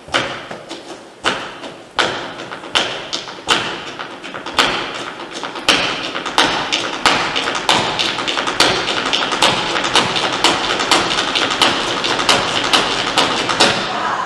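Flamenco zapateado: a dancer's shoe heels and toes striking the wooden stage. Separate stamps at first, then from about halfway a dense, driving run of rapid footwork with accented strikes about every three-quarters of a second.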